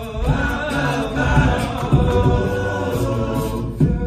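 All-male a cappella group singing held, layered chords through microphones over a low sung bass line, with vocal percussion ticking through it.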